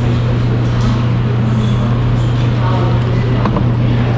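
Loud, steady low-pitched motor hum that does not change, with faint voices in the background and a light click about three and a half seconds in.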